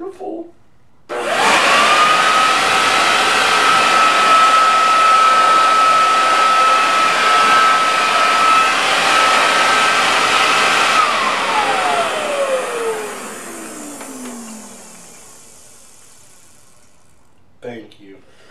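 Corded electric leaf blower switched on about a second in, running with a steady high whine over a rush of air for about ten seconds, then switched off and winding down, its whine falling in pitch as it fades.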